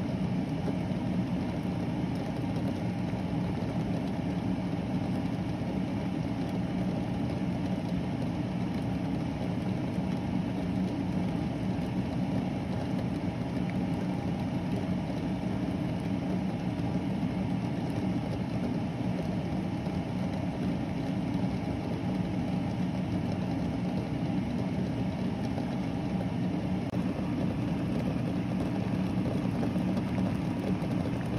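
Water at a rolling boil in a small stainless steel saucepan of eggs on an electric burner: a steady, low bubbling rumble.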